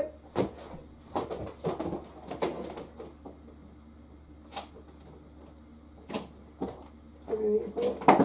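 Scattered knocks and clunks, about half a dozen sharp ones spread over several seconds with a quiet stretch in the middle, from a compact portable washing machine and its hoses being handled and fitted into place.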